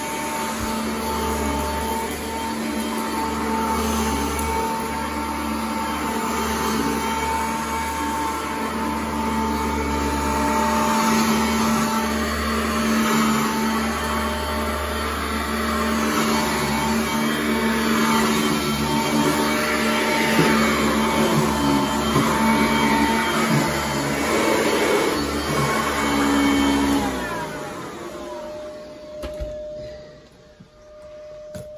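Corded commercial upright vacuum cleaner running over carpet: a steady motor hum under a hiss that swells and fades as the head is pushed back and forth. It switches off about 27 seconds in, and a fainter single steady tone remains.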